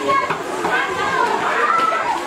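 A crowd of schoolchildren chattering and calling out, many voices overlapping.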